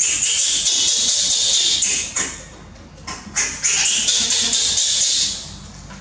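Baby macaque crying loudly: two long, high-pitched screams of about two seconds each, the sign of a hungry infant begging for its milk.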